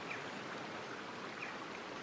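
Faint, steady outdoor background of rushing noise, like a stream running, with no distinct events.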